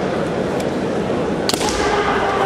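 A single sharp crack of a bamboo shinai strike about a second and a half in, over a steady hall din.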